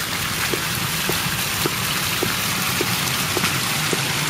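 Pool fountain's water jets splashing steadily into the basin and pool, with faint regular ticks about twice a second.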